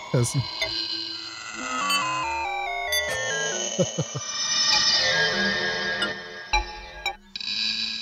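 Buchla-format modular synthesizer patch: quantized high notes pass through a 1979 Stereo Microsound Processor whose pitch, grain position and reverb amount are randomly modulated. The result is a staircase of notes stepping downward, a few sharp clicks, then a dense, warbling cluster of tones, a sound described as "the carnival of your nightmares".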